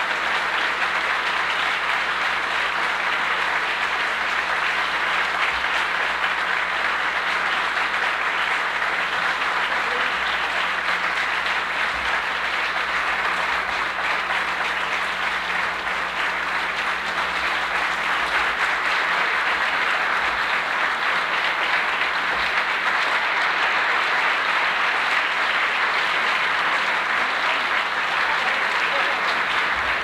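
Seated audience applauding steadily at the close of a jazz number, a continuous even clapping that neither swells nor dies away.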